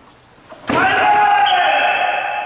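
A sharp smack about two-thirds of a second in, at once followed by a loud, drawn-out shout that holds and slowly fades: a shout in a karate kumite bout.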